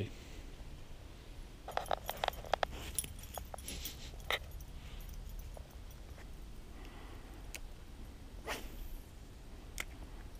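A dog moving along a woodland trail covered in dry leaves and pine needles: a run of short rustles and clicks a couple of seconds in, then fainter scattered ones.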